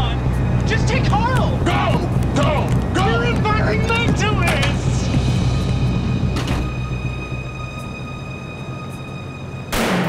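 Voices over a steady low rumble, giving way about halfway through to sustained high tones of a tense music score. A sudden loud boom comes near the end.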